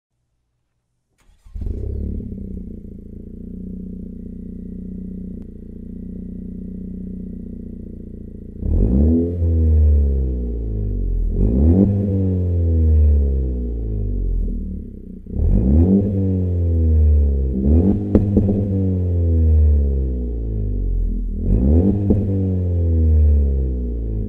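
Honda Civic Si's 1.5-litre turbocharged four-cylinder on a cold start, heard through an ARK Performance DT-S catback exhaust: it fires up about a second and a half in and idles steadily. From about nine seconds in it is revved about five times, each blip rising quickly and falling back toward idle.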